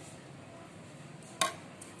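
A metal spoon clinks once, sharply and briefly, against a dish about three-quarters of the way through, over quiet room tone.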